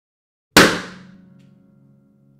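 A balloon bursting once right next to a steel-string acoustic guitar: a sharp pop about half a second in, decaying quickly, after which the guitar's strings and body ring on in steady low tones.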